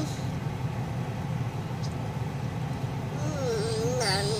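Steady low rumble inside a parked car's cabin. About three seconds in, a child's wavering, sing-song voice starts over it.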